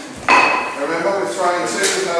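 A sharp clack with a brief ring about a third of a second in, followed by a man's voice.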